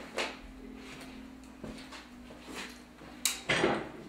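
Handling sounds as a hair clipper with a guard comb is picked up and readied: a few light clicks and knocks, then a louder clatter about three seconds in.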